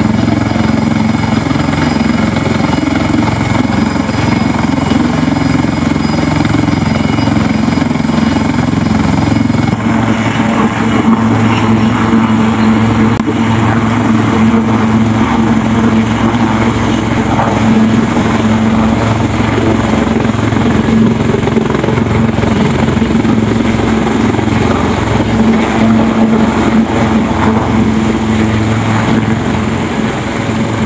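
Philippine Navy AW159 Wildcat helicopter running on its pad. The turbine and rotor sound is loud and steady, and a high whine climbs in pitch about a third of the way in and then holds as it powers up and lifts off near the end.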